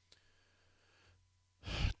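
Near silence, then a man's short, quick in-breath close to a studio microphone near the end.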